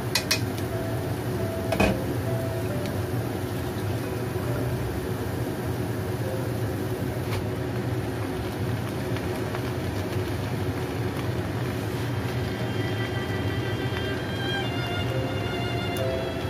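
Diced onion frying in lard in a wok with a steady sizzle, and chopsticks knocking against the wok a couple of times near the start. Leafy greens go in on top of the onion, with a faint knock about seven seconds in.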